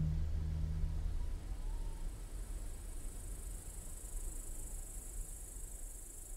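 A low string note rings out and dies away over the first second or so, and a steady high chirring of crickets builds from about two seconds in.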